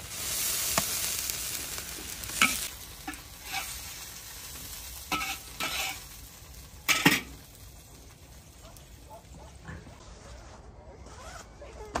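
Food hitting hot oil in a wok and sizzling loudly for about two and a half seconds, then a spatula knocking and scraping against the wok several times as it is stir-fried, the sizzle dying down.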